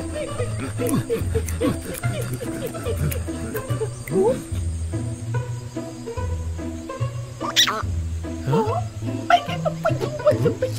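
Cartoon soundtrack: background music with a repeating low bass line, under short squeaky vocal calls and cries from animated characters, with one sharp, loud cry about seven and a half seconds in.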